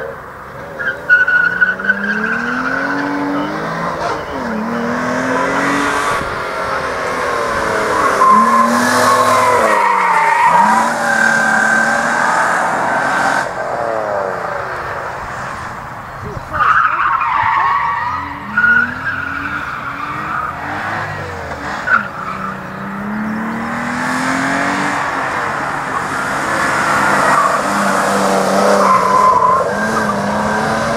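Nissan R32 Skyline sedan's engine revving up again and again as the car is slid through tight turns, with the tyres squealing in long wavering screeches, loudest about a second in and again a little past halfway.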